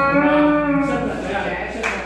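A voice holding one long sung note for nearly a second, which then dies away into quieter talk and room noise.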